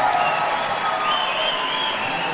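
Audience applauding at the end of a song.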